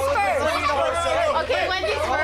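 Several people talking over one another, indistinct chatter with no clear words, over a steady low hum.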